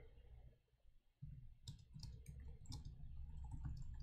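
Faint computer keyboard typing: scattered keystroke clicks that stop for a moment about half a second in and pick up again more densely after a second and a half.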